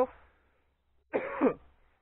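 A man's single short cough, clearing his throat, about a second in.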